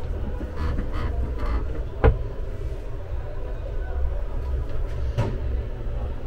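Fold-down washbasin in a campervan washroom being swung down from its wall cabinet, with a sharp knock about two seconds in and a lighter click about five seconds in, over a steady low rumble.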